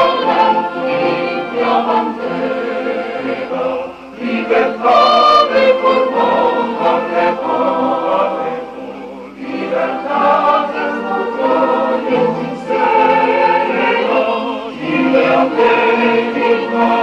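Mixed choir singing a patriotic hymn with a military symphonic wind band accompanying, sustained chords in phrases with brief dips between them about four, nine and a half and fourteen and a half seconds in.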